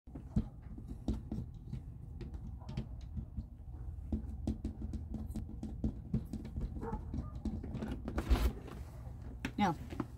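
Light, irregular taps and clicks on a glass pane, with a heavier dull thump about eight seconds in. A voice says "No" at the very end.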